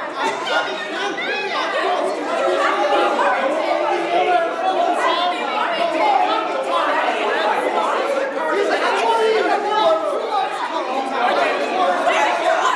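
Several actors' voices talking and calling out over one another at once, a continuous jumble of overlapping chatter with no single voice standing out.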